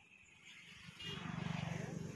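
A motor vehicle's engine running nearby, a steady low hum that grows louder about a second in.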